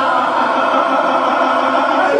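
A man and a woman singing a Bosnian izvorna folk song together, holding one long note with hardly any instrumental backing.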